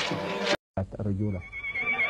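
Crowd chanting cuts off abruptly about half a second in. After a brief silence a low voice is heard, then near the end a high, wavering trilled cry begins: a woman's ululation.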